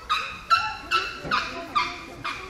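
Young Asian elephant giving a run of about five short, high-pitched trumpet calls, roughly two a second, a protest at being shoved toward the bath by another elephant.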